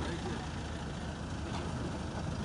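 A car engine idling steadily as a low hum, with faint voices in the background.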